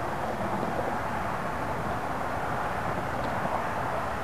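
Steady, even outdoor background roar with no distinct events.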